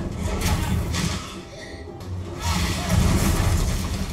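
Battle-scene soundtrack from a TV episode: loud low rumbling sound effects in surges, with music underneath, swelling loudest from about two and a half seconds in.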